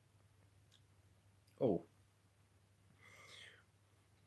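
Mostly quiet room with a faint low hum; a man says a short "Oh" about one and a half seconds in, and near the end comes a faint breathy, whisper-like sound.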